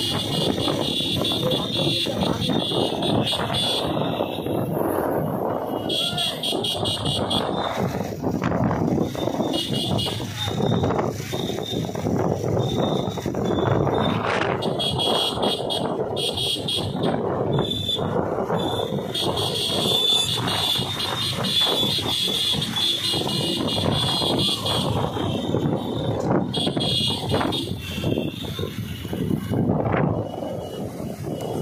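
Riding on a motorcycle in a group of motorcycles: engine noise and wind rushing over the microphone, with a steady high-pitched tone that cuts in and out several times.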